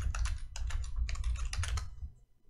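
Typing on a computer keyboard: a quick run of about a dozen keystrokes with a low thud under them, stopping near the end.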